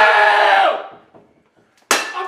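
A man's drawn-out, angry shout fades out. Near the end a baseball bat strikes a game console on a hardwood floor with one sharp crack.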